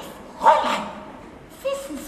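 An actor's short, wordless vocal outbursts: one loud, sharp cry about half a second in and a shorter call near the end.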